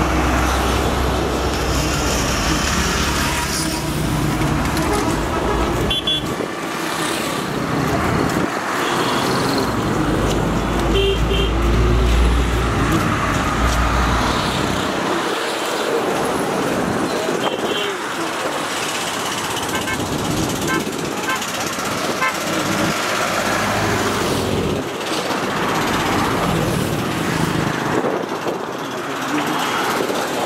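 Road traffic: vehicle engines rumbling past, with short horn toots and the indistinct voices of people walking close by. The heaviest engine rumble comes at the start and again about midway.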